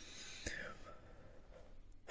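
A quiet pause in speech at a close microphone: a man's faint breathing, with a small mouth click about half a second in.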